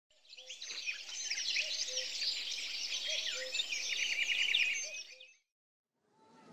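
Many birds chirping and trilling together in a dense chorus, with a quick repeated trill in the middle. It fades in at the start and fades out to silence about half a second before the end.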